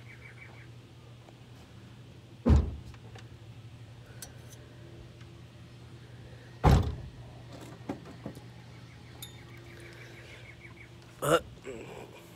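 Two short thumps about four seconds apart over a faint steady low hum.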